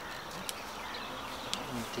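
Steady outdoor background noise, an even hiss that may carry an insect's buzz, with two brief faint clicks about half a second and one and a half seconds in.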